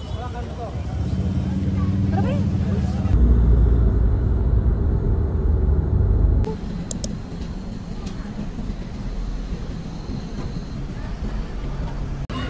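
Several short clips of live sound cut together: street bustle with voices, then about three seconds of low car-road rumble, then quieter traffic noise.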